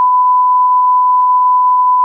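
A steady, loud 1 kHz sine test tone, the reference tone played with television colour bars.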